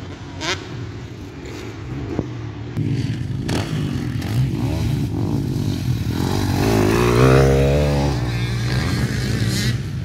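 Motocross dirt bike engine revving hard as the bike passes close by. It is loudest about seven seconds in, with the pitch rising and dipping through the revs, then it fades as the bike pulls away. Before that, other bikes are heard further off across the track.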